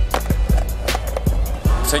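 Skateboard on pavement during a flip trick, the board popping, landing and rolling, mixed with hip hop music with a steady beat.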